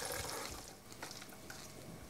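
Stock pouring from a pot through a metal sieve into a jug, a liquid splashing sound that trails off within the first half second, followed by a few faint soft clicks as the solids tip into the sieve.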